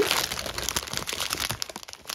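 Clear plastic packaging crinkling as it is handled, a dense run of small crackles that grows fainter and sparser towards the end.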